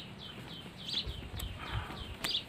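A bird chirping in a steady series of short falling notes, about two a second. A couple of sharp knocks come from a wooden stick working among loose bricks, with a low rumble of handling in the middle.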